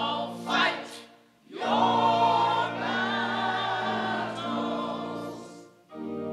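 Robed church choir singing with organ accompaniment: a short phrase, a brief pause about a second and a half in, then a long sustained phrase that fades out just before the end.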